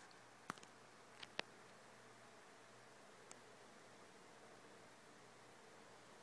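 Near silence: faint room hiss, with a few soft clicks in the first second and a half and one more about three seconds in.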